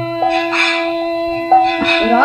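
Kirtan music between sung lines: a steady held harmonium tone with brass hand cymbals (karatalas) struck and ringing a few times.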